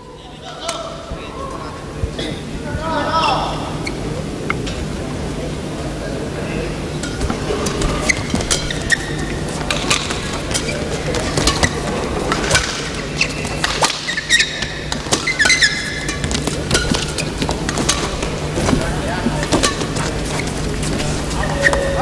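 Badminton rally: sharp, irregular racket strikes on the shuttlecock and the players' shoes on the court, over a low murmur of voices and a steady hum in a quiet hall.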